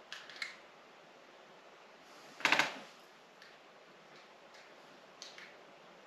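Soft clicks, then one louder short click about two and a half seconds in and a few fainter ones near the end: a GoPro's shutter sounding as remote-triggered photos are taken.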